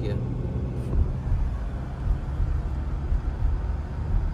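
Steady low rumble of a car driving on a city road, engine and tyre noise heard from inside the cabin.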